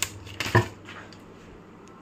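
A few light clicks and a sharper knock of kitchen containers being handled on a counter, the loudest about half a second in.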